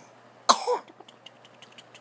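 A baby's short, throaty, cough-like vocal sound about half a second in, followed by a few faint clicks.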